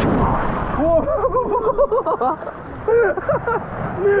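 A splash as a rider plunges into the water at the bottom of a water slide, heard through a drenched action camera so the sound turns muffled right after. A voice follows in short bursts through most of the rest.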